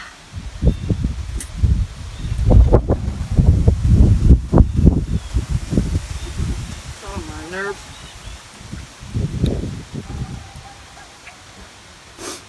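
Wind gusting against the microphone: loud low rumbling buffets, heaviest in the first half and again briefly near the end.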